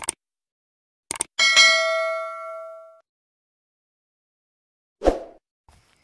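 Subscribe-button sound effect: a pair of mouse clicks about a second in, then a notification-bell ding that rings out and fades over about a second and a half. A short thump follows near the end.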